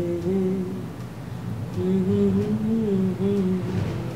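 A voice humming a slow, wavering tune in long held notes, with a short break about a second in.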